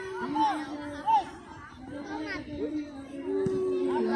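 Many overlapping voices of children and onlookers shouting and chattering at a youth football game, with one louder shout about a second in.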